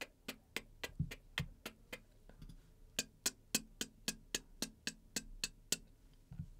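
Short vocal percussion sounds made into a microphone, about four a second. A run of mouth snare hits comes first, then after a short pause a brighter, hissier run of hi-hat sounds. Each is a take recorded to train Dubler 2's drum triggers.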